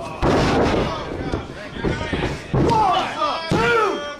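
A wrestler's body slamming onto the wrestling ring's canvas mat about a quarter second in, with the ring ringing out the blow. Shouting voices follow as the pin is counted.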